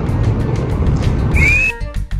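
Steady rumble of street traffic, cut by one short rising whistle about one and a half seconds in. Upbeat cumbia music starts right after the whistle, near the end.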